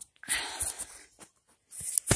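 A short breathy exhale close to the microphone about a quarter second in, followed by faint clicks.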